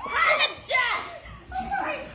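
Excited shouting and yelling in high-pitched voices, several loud outbursts with no clear words.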